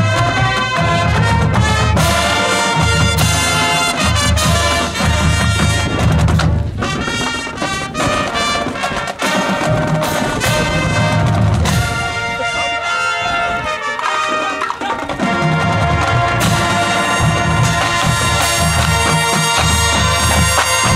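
A college marching band playing: trumpets, trombones and sousaphones over a drumline's steady low beat, loud and continuous.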